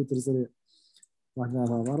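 A man speaking, broken by a pause of under a second, about half a second in, that holds only a couple of faint clicks.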